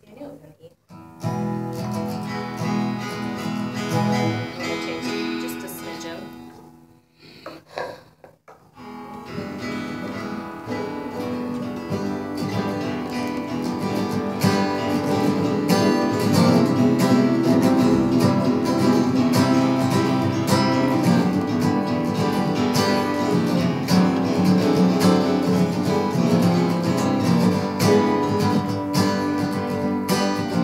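Acoustic guitar strumming chords, starting about a second in, stopping briefly about six seconds in, then resuming and growing steadily louder.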